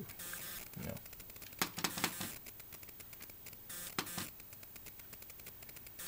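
Faint scattered clicks and light rustling, with one short spoken word about a second in.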